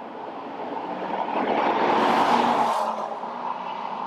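Holden Caprice V sedan with an L77 V8 driving past at speed: the engine hum and tyre and wind noise swell to a peak about two seconds in, then fade as it moves away.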